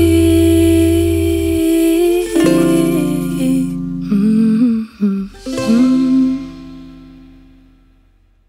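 Closing bars of a song: a wordless vocal line with held and gliding notes over a plucked string accompaniment, dying away over the last two seconds.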